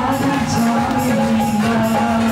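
Live devotional bhajan music: a held, pitched melody line over a steady beat of dholak drumming and jingling hand percussion.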